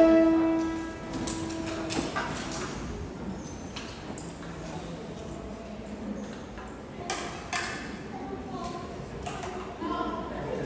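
The last note of the violin-recital music is held for about two seconds and then stops, giving way to low, indistinct voices and the small knocks and handling noises of children moving with their violins, including a couple of sharper knocks about seven seconds in.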